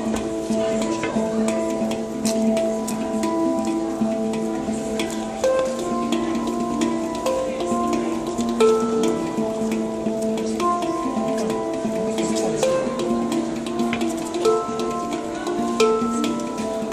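Steel handpan played by hand: ringing, overlapping notes in a flowing melodic pattern, with light sharp taps on the shell between the notes.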